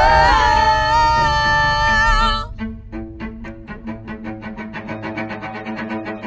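Music: held string tones that break off abruptly about two and a half seconds in, followed by bowed strings playing quick repeated notes, about four a second, over a low sustained tone.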